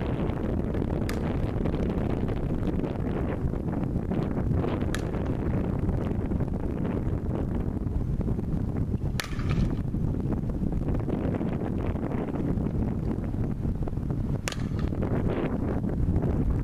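Wind buffeting the microphone, a steady low rumble, with four sharp cracks spaced several seconds apart; the one about nine seconds in rings briefly.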